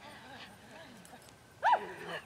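A dog giving a sharp, high yip about one and a half seconds in, after a stretch of faint voices.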